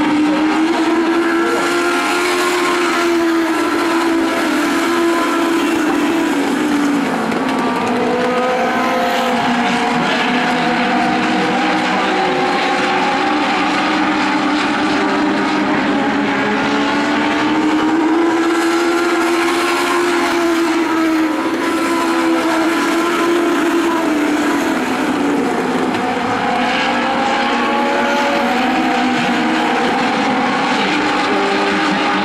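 Several Legend cars' Yamaha motorcycle engines running around an oval track. Several engine notes overlap, rising and falling in pitch as the cars accelerate and back off around the laps.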